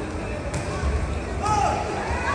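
Crowd voices and murmur in an indoor arena, with the sharp smack of a volleyball being struck about half a second in and another about a second and a half in.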